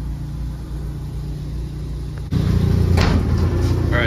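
A steady low mechanical hum. About two and a quarter seconds in it steps up suddenly to a louder, rougher low rumble, with a brief hiss shortly after.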